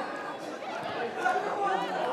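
Indistinct chatter of several voices talking over one another, no words clear.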